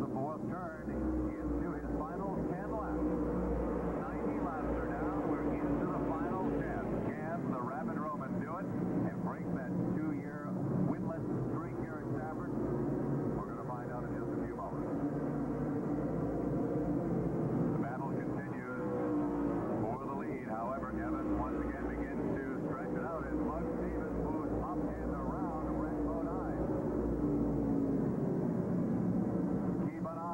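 Engines of a field of modified stock cars running on an oval track, their pitch rising and falling as the cars pass and change speed. The sound is dull and muffled, with almost no treble, with voices underneath.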